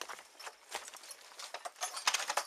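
Team of Percheron draft horses walking close by while pulling a horse-drawn sulky plow, with irregular knocks and clinks of hooves and harness chains and hardware. The sharpest clinks come near the end.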